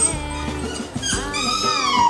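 A corgi whining: one long, loud whine starting about a second in, rising slightly and then falling in pitch, over background music. It whines in frustration at cling film stretched across a doorway that blocks its way.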